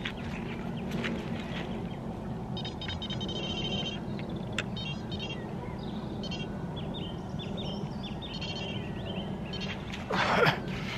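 Electronic carp bite alarms bleeping in fast runs of high pips, set off by line being pulled from the rod. Birds chirp between the runs.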